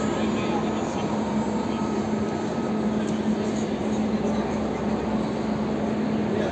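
Railway station hall ambience: the chatter of many people over a steady low hum that holds throughout.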